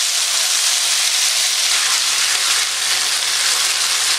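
Thin strips of marinated flank steak frying in very hot peanut oil in a wok-style skillet: a loud, steady sizzle.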